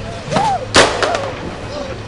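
A woman's short, frightened cries and whimpers, with one sharp, loud bang about three-quarters of a second in.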